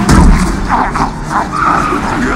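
A loud, heavy boom at the very start as a figure slams down onto the hood of a moving car, then quieter thumps and clatter in a film's sound-effects mix.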